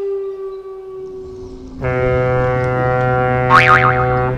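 Intro soundtrack: a held tone fades out, then about two seconds in a loud steady held note starts. Near the end a quick high sound effect wobbles rapidly up and down in pitch.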